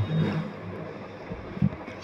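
A short pause in a man's speech: low room noise, with a faint low vocal murmur in the first half second and a brief faint sound about a second and a half in.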